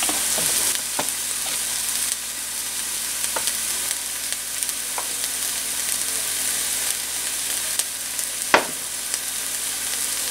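Diced onion sizzling in hot olive oil in a skillet: a steady hiss with scattered small pops and crackles, and one louder click near the end.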